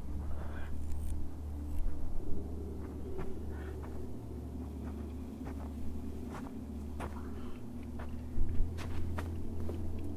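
A person crawling through snow-covered undergrowth: dry twigs and leaves rustle and snap in short cracks, louder about two seconds in and again near the end, over a steady low rumble.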